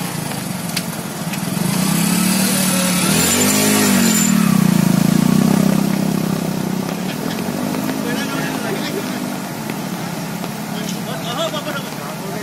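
Motorcycle engines revving in low gear while riding through fast-flowing floodwater, the pitch rising and falling in a couple of swells. The loudest comes a few seconds in as one bike passes close, over the rush of water thrown up by its wheels.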